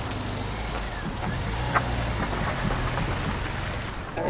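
A small car's engine running as the car drives slowly off over a wet dirt track, a steady low hum with tyre and road noise.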